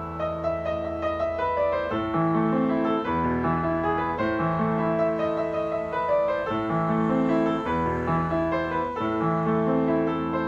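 A Yamaha P121 upright acoustic piano played: held chords and a melody over deep bass notes that change every second or two.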